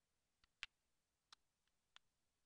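Near silence with four faint, short clicks spread across two seconds.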